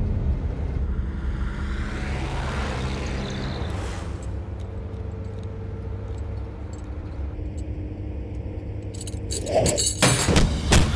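Faint metallic clinks of steel handcuffs being worked at, over the steady low rumble of a moving police van; a swelling whoosh fills the first few seconds and a sudden louder burst comes near the end.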